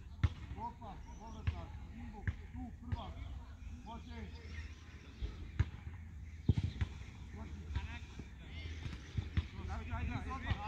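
Faint voices talking at a distance, with irregular sharp knocks every second or so over a steady low rumble.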